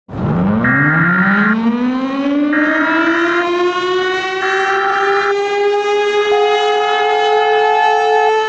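Emergency alert siren winding up in pitch over the first two seconds and then holding a steady wail. Three short, higher beeps sound over it about two seconds apart, and a lower steady tone joins near the end.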